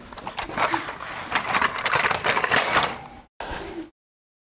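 Irregular clicking and rattling from small diecast model cars and their packaging being handled close to the microphone. The sound breaks off briefly a little after three seconds, then cuts out abruptly to dead silence just before the end.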